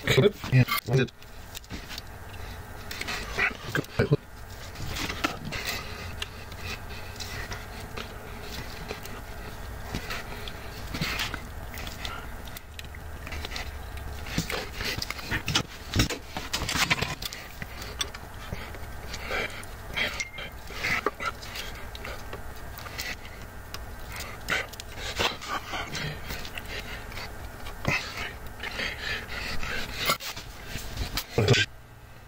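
Fast-forwarded bench-work sounds from soldering wires onto an amplifier's power-supply board: irregular short clicks and knocks from tools and handling, coming quickly one after another.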